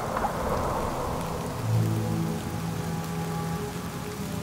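Patter of rain and water drops, dense at first and thinning, with soft sustained low music notes underneath that swell about halfway through.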